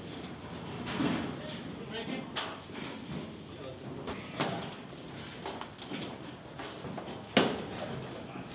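Scattered knocks, rattles and rustling from gear being handled, with faint voices in the background. One sharp bang about seven seconds in is the loudest sound.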